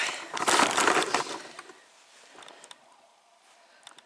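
Footsteps crunching through snow and brushing through dry twigs and branches, with crackling snaps, loud for the first second or so and then dying away to a few faint clicks.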